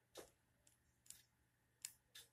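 Faint clicks of the small plastic buttons on a NAKO digital car clock, pressed four times at uneven intervals of roughly half a second to a second, the second one weaker; each press steps the alarm setting on by a minute.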